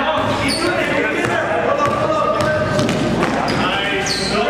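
Indoor basketball game sounds: a basketball bouncing on the gym floor under indistinct shouting from players, echoing in the hall, with a short high squeak about half a second in.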